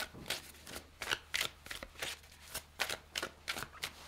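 A deck of tarot cards being hand-shuffled, with a short papery snap of cards about three times a second.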